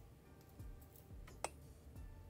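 Faint clicks of pearl beads knocking against each other as the beadwork is handled and threaded on fishing line, with one sharper click about one and a half seconds in.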